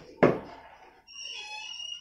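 A single sharp knock of a hanging cricket ball meeting the face of a cricket bat in a back-foot defensive block, with a short ringing decay. Faint high steady tones come in during the second half.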